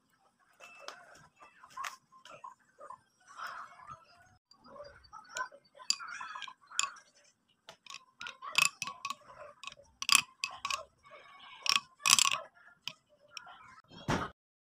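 A spoon stirring yogurt in a glass bowl, with irregular clinks and scrapes against the glass. The clinks come quicker and louder in the second half.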